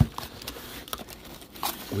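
A hand rummaging in a cardboard box, with one sharp knock right at the start followed by light rustling and small clicks of packaged items being handled.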